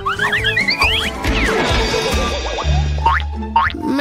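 Cartoon comedy sound effects over background music: quick rising whistle-like glides in the first second and a boing about three seconds in.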